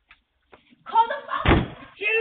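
A voice calling out loudly, with one heavy thud about a second and a half in.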